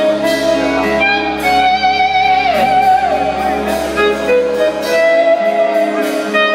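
Live rock band playing. An electric guitar carries a held lead melody with vibrato and two downward string bends midway, over a low bass note that sustains until near the end.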